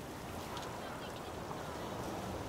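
Beach ambience: a steady low wash of sea on a shingle shore with faint distant voices.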